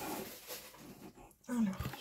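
Plastic wrapping crinkling and rustling as it is pulled off a boxed kit, fading out about a second in.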